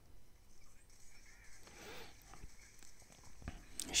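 Faint music from the anime soundtrack, with small indistinct sounds under it.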